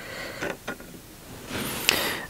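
Hands working a feathering sailboat propeller's blade and its retaining nut, giving a few faint metallic clicks and light handling noises, then a louder rustle and a sharper click near the end.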